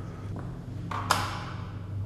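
A single light tap about a second in, as a plastic K2 meter is set down on the edge of a porcelain sink, over a steady low hum.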